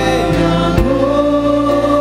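A congregation singing a Korean worship song together with musical accompaniment, holding long notes and moving to a new note about three quarters of a second in, with a few sharp beats.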